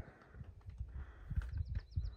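A bird sings a rapid trill of short, high, evenly spaced notes, about ten a second, starting near the end. Low irregular rumbling on the microphone lies underneath.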